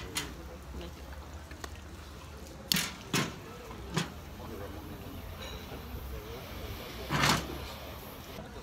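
A butane torch lighter being clicked and fired at a cigar's foot: three short sharp bursts a little under halfway through, then a longer hissing burst of about half a second near the end, over low background chatter.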